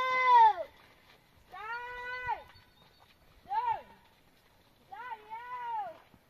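Children shouting long, drawn-out calls across a mountainside, calling for their missing mother: about four loud high calls, one ending just after the start, one near two seconds in, a short one at about three and a half seconds and a two-part call near the end.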